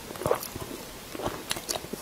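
Close-miked eating: a bite into a soft fried ball stuffed with meat and soaked in chili oil, about a quarter second in, then the smaller clicks of chewing.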